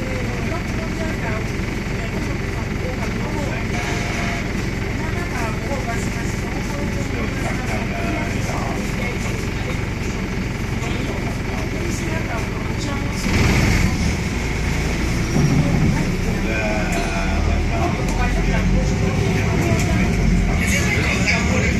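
Interior sound of a Wright StreetLite single-decker bus: its diesel engine runs at idle while the bus stands, then picks up about thirteen seconds in as the bus pulls away and accelerates. Faint passenger voices in the background.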